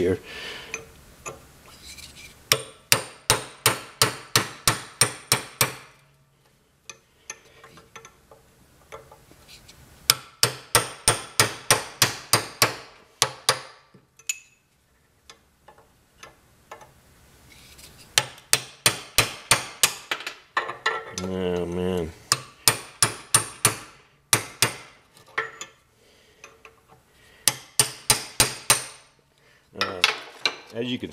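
Hammer blows on a cold chisel cutting old, hard, brittle babbitt out of a steam engine's cast-iron main bearing housing. The blows come in quick bursts of about five a second, several bursts with pauses between them.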